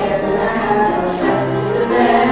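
A chorus of children singing a musical number together, with sustained held notes.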